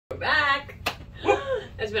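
Voices calling out, with one sharp snap just before a second in.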